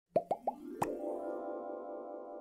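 Animated-logo intro sound effect: three quick cartoon bubble pops rising in pitch, then a click and a held musical chord that slowly fades.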